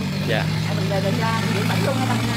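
Speech in Vietnamese over a steady low drone.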